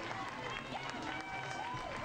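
Faint field ambience of distant voices, players and spectators calling out here and there over a light background hiss.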